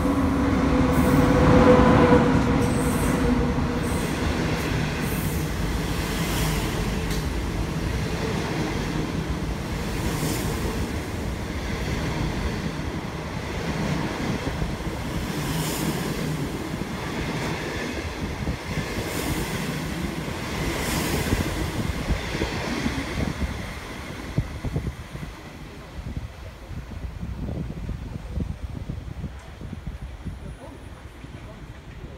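China Railway SS8 electric locomotive and its long rake of passenger coaches running through the station without stopping. The sound is loudest as the locomotive passes about two seconds in. Then comes a steady rumble of coach wheels with occasional clacks, fading away over the last several seconds as the train leaves.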